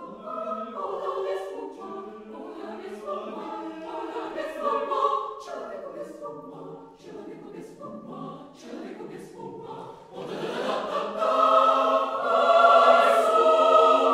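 Mixed chamber choir singing in Russian, quietly at first, with crisp consonants, then swelling to a loud, sustained full chord about eleven seconds in.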